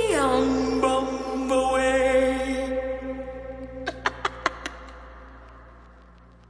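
The song's closing held chord drops sharply in pitch at the start, holds, then fades away. It is followed by a quick run of five short, sharp sounds a little after the middle.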